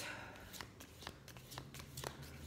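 A deck of tarot cards being shuffled by hand: a quick run of faint, soft card clicks, several a second.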